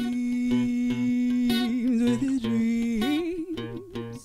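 A woman singing a long held note, then bending it up and down in a run of wavering notes near the end, over acoustic guitar accompaniment with regular low bass notes.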